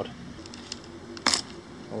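A Mon Thong durian husk being pulled apart by hand along its seam, with one short, sharp tearing crack a little over a second in.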